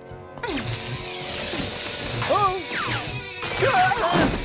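Cartoon sound effect of electric sparks crackling and fizzing over background music with a steady low beat.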